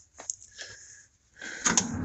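A few faint clicks and knocks of things being handled in a truck's metal tool compartment, with a sharper click near the end.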